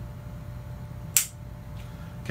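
An unloaded handgun dry-fired: a single sharp click about a second in as the trigger breaks and the striker or hammer releases on an empty chamber.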